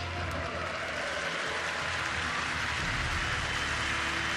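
Large stadium crowd cheering and applauding as a steady wash of noise.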